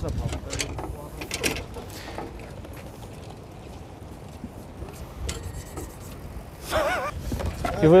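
A few knocks and clatters as muddy scrap is pushed into a metal street litter bin, over a low rumbling outdoor background, with a brief voice near the end.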